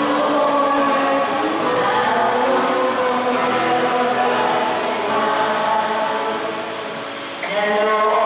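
Many voices singing together in church, a congregation's sung response. Near the end a louder solo voice comes in over the microphone.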